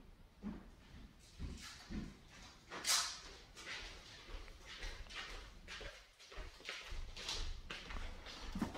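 Cardboard boxes and packing being handled: a string of irregular soft knocks and scraping rustles, the loudest scrape about three seconds in.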